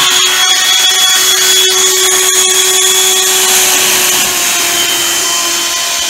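Small electric motor of a homemade window-climbing robot running at speed: a loud, steady high whine, with scattered small clicks.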